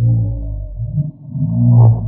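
A man's voice slowed far down, so it comes out as deep, drawn-out, droning tones, two long swells with a short dip between them.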